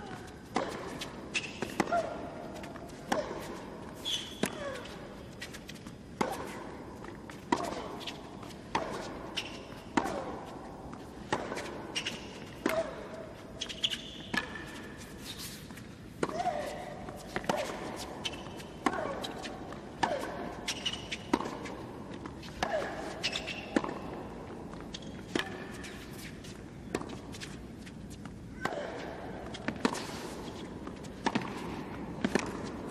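A long tennis rally on a hard court: racket strikes on the ball about every second and a half, back and forth for the whole stretch. Many shots come with a short cry from the hitting player that falls in pitch.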